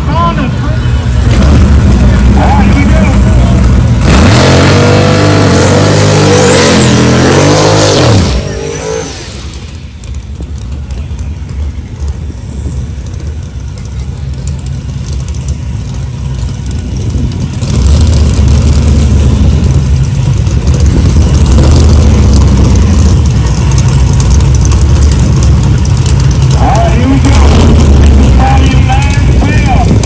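Drag-racing car engines. About four seconds in, an engine is held at high revs, its pitch climbing for about four seconds before it cuts off suddenly. From about eighteen seconds in, a loud, deep engine rumble holds steady at the start line.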